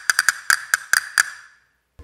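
Wooden castanets on a table-mounted castanet machine tapped with the fingers: a quick run of sharp wooden clicks, then several more evenly spaced, the last about a second in, its ring fading out.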